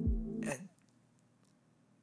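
A held background-music chord with low, falling thuds beneath it, cut off abruptly about half a second in. After that, near silence: room tone.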